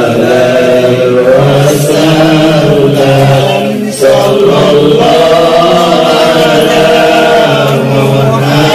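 A group of men chanting Islamic devotional verses together in long, sustained lines, loud and amplified through a microphone.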